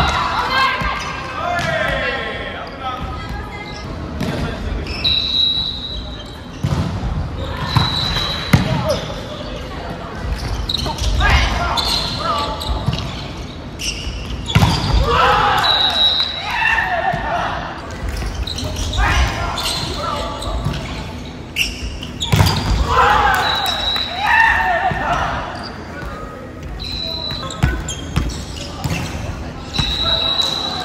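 Volleyball rally sounds echoing in a large gymnasium: the ball slapping off players' hands and arms and hitting the wooden floor, players calling out, and short high squeaks of shoes on the court.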